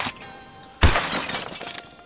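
Cardboard packaging being handled: a click at the start, then about a second in a sudden loud crash-like rustle with a low thump that fades over about a second. Faint background music with steady tones plays underneath.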